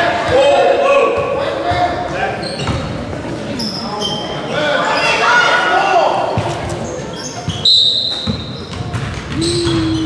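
Basketball bouncing on a hardwood gym floor during a youth game, with shouting voices echoing in the large hall.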